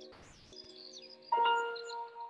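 Soft meditation music of sustained, bell-like ringing tones, with a new chime note struck a little past a second in and ringing out. Short bird chirps sound high above it, and there is a brief rustle at the start.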